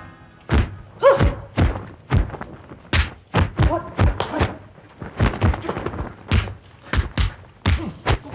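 Hand-to-hand fight sound effects of a kung fu drama: a rapid, irregular run of punch and block impacts, roughly two a second, with a couple of short cries among them.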